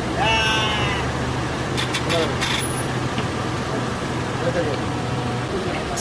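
Indistinct voices, including a short drawn-out call near the start, over a steady low hum that stops shortly before the end, with a few sharp clicks around two seconds in.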